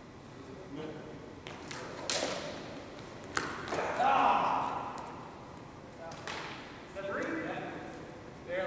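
Sparring swords, a longsword and a basket-hilted broadsword, striking each other in a series of sharp clicks and knocks in a large hall, followed by a louder rush of noise about four seconds in as the fencers close. A person's voice is heard near the end.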